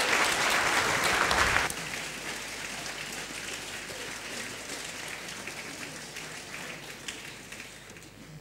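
Audience applause in a debating chamber. It is loud for the first couple of seconds, then drops sharply and dies away to a few scattered claps.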